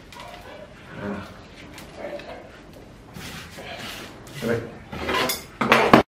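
Gloved hands working the soil and roots of a golden cypress's root ball: intermittent rustling and scraping, with some low muttering near the end.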